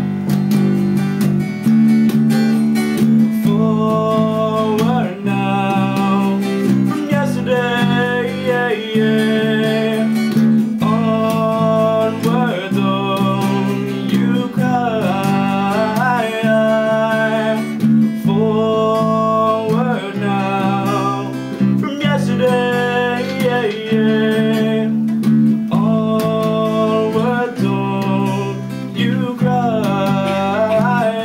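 A song played live on a strummed acoustic guitar and an electric bass guitar, with a young man singing over them in phrases of a few seconds.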